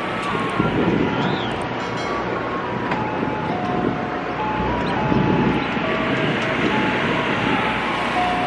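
Steady outdoor street noise, a broad rushing wash with occasional swells, under a slow, simple tune of single held notes stepping up and down in pitch.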